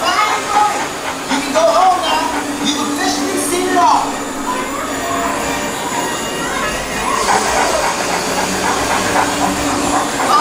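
Dark ride in motion: a steady rumble and hiss from the ride vehicle under the ride's soundtrack, with scattered short voice-like calls and whining glides.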